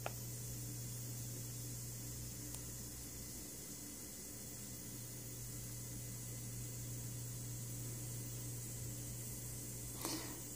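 The plastic power button of a Feel Life Mini-Air 360 mesh nebulizer clicks once at the start and once at the very end. Between the clicks the nebulizer runs almost silently as it mists, and only a faint steady hiss and low hum are heard.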